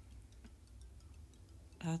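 Quiet room tone: a low steady hum with faint scattered ticks, then a woman's voice starts near the end.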